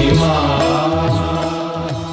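Closing bars of a Bengali devotional song to the goddess Tara, with sustained chant-like music fading out.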